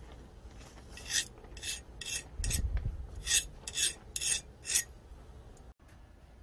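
A hardness-test file marked HRC 60 scraped across a knife blade's steel edge in about eight short strokes, roughly two a second. It checks whether the hardened blade is at least 60 HRC.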